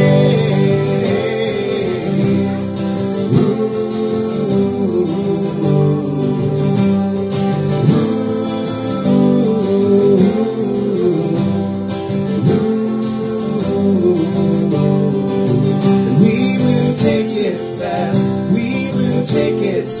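Two acoustic guitars strummed together, with singing over them.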